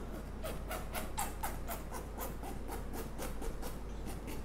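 A nearly empty plastic squeeze bottle of white acrylic pouring paint squeezed in quick repeated pumps, about four a second, as the last of the paint is forced out.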